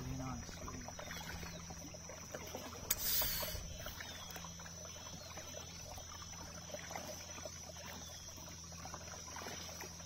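Kayak paddling on calm water: the paddle dips and drips with small splashes. A sharp knock followed by a brief splash comes about three seconds in, over a steady faint high tone.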